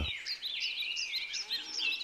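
Garden birds chirping: a quick, steady run of short, high chirps and twitters from several birds.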